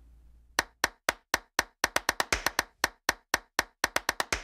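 A run of short, sharp clap-like hits starting about half a second in, about five a second and coming faster through the middle, with no tune over them.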